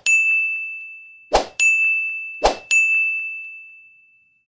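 Sound effects for end-screen buttons popping in: three bright dings, each following a short pop and ringing away over about a second, spaced about a second apart; the last one rings longest.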